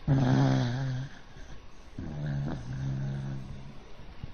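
A dog snoring in its sleep: two long, droning snores, the first louder and about a second long, the second starting about two seconds in. The dog is sleeping on its back, a position the owner says makes it snore.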